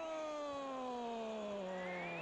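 A long, quiet pitched tone sliding slowly and evenly down in pitch, an added sound effect.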